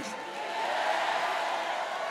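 A congregation shouting and cheering together in response to a call to shout yes: a dense mass of many voices that swells about a second in, then slowly dies away.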